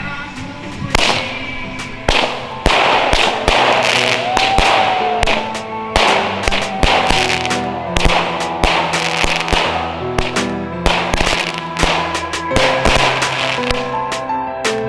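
A 49-shot firework cake firing, its shots going off in quick succession, roughly one to two a second, with background music playing under them.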